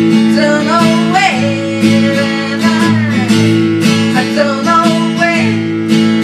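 Acoustic guitar strummed steadily, with a woman singing a melody over it in two phrases.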